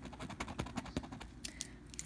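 A plastic scratcher tool scraping the coating off a scratch-off lottery ticket in quick, short, irregular strokes.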